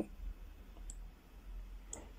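Quiet pause in a voice recording: faint room tone with a low hum, and two small, faint clicks about a second apart.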